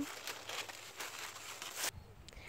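Dry leaves and stalks in a crop field rustling and crackling as someone moves through them, with a short sharper crackle near the end.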